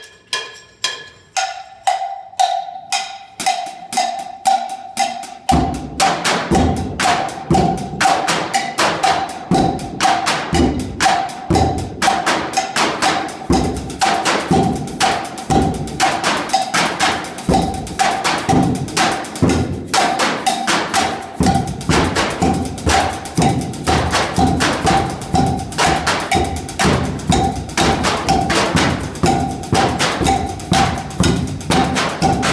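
Percussion ensemble on found objects: a cowbell-like ringing beat starts alone, and about five seconds in drumsticks on upturned plastic buckets and trash cans join in with a fast, steady groove.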